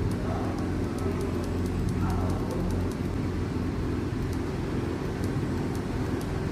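Honda ADV 160 scooter's single-cylinder engine idling steadily, warmed up.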